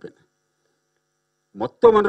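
Speech that cuts off abruptly, then about a second and a half of dead silence before the talking resumes near the end.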